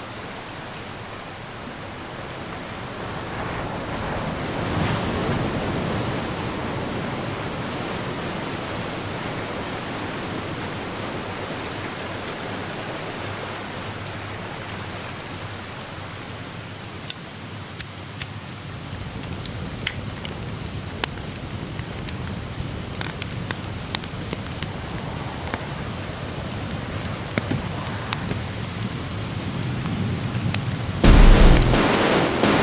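A dense wash of noise, like rain or surf, forming a passage of an experimental electronic instrumental track. It swells a few seconds in, and sharp crackles and clicks are scattered through the second half.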